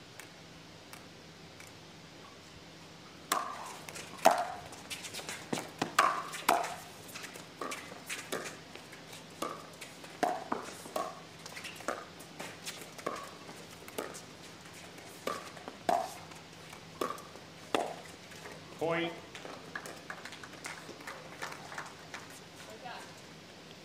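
Pickleball rally: a quick series of sharp pops from paddles striking the plastic ball, one or two a second, starting about three seconds in. A short vocal shout comes near the end.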